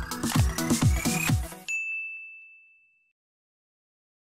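Electronic logo-intro sting: a rising tone over a quick run of deep, falling bass hits, breaking off about one and a half seconds in to a single high ding that rings and fades out.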